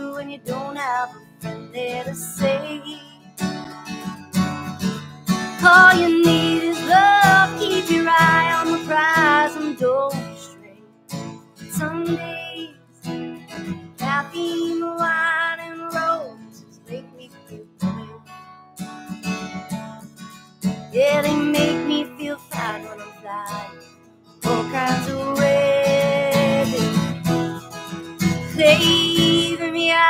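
A woman singing with her own strummed acoustic guitar accompaniment, the sung phrases broken by short stretches of guitar alone.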